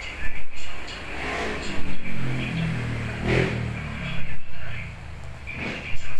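A motor vehicle engine revving, its pitch rising and then falling about two to four seconds in, heard over steady background noise.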